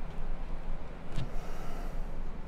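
Room tone with a steady low hum, and one faint click a little over a second in.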